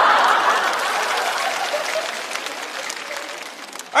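Studio audience applauding and laughing. It is loudest at the start and fades steadily over about four seconds.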